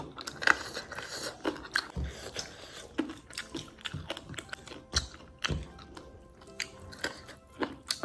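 Close-up mouth sounds of someone eating rice and boiled chicken by hand: chewing with irregular soft clicks and smacks.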